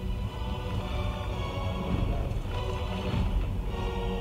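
Tense, scary film-score music with held notes over a heavy low undertone, swelling about two and a half seconds in.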